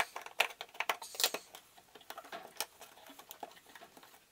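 Small clicks and light rattles of hands working wires loose from a metal electrical junction box, quickest over the first second or so, then a few scattered ticks.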